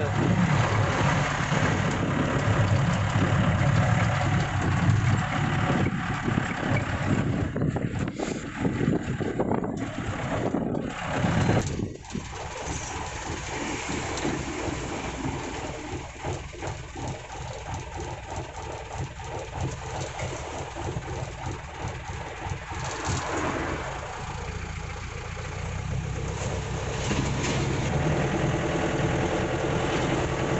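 Mahindra Major Jeep's diesel engine running under way, heard from inside the open-sided cab with road noise. The engine sound drops sharply about twelve seconds in, stays quieter for a while, then builds again over the last few seconds.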